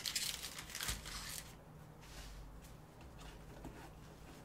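Foil trading-card packs crinkling as they are handled and stacked, loudest in the first second and a half, then fading to faint rustles and light taps.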